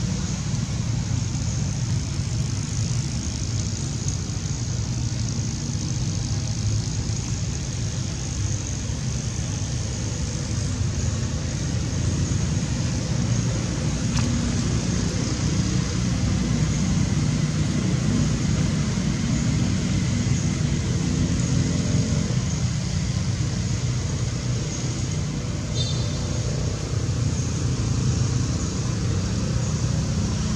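Steady outdoor background noise: a continuous low rumble with a hiss above it, and a faint hum rising and falling in the second half.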